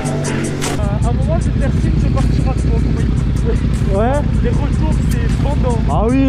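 Background music cuts off just under a second in, giving way to a Yamaha MT-07's parallel-twin engine running slowly with an even, lumpy pulse. Brief snatches of voices come over it about a second in and again near four seconds.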